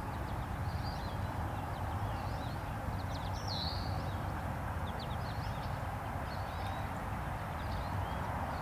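Outdoor ambience: scattered short songbird chirps and calls, including one longer swooping note a few seconds in, over a steady low background rumble.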